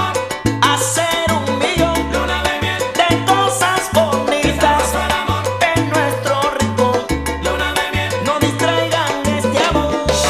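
Salsa romántica band recording playing, with a repeating bass line under dense percussion.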